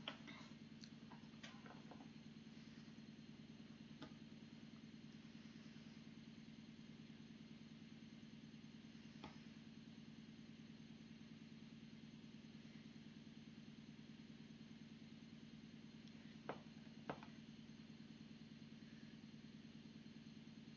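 Near silence: room tone with a faint steady low hum and a few faint isolated clicks.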